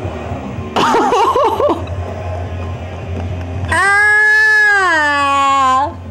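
A man crying out during a needle piercing through a mole on his back. There is a short wavering yelp about a second in, then a long, loud held cry that drops in pitch and cuts off near the end.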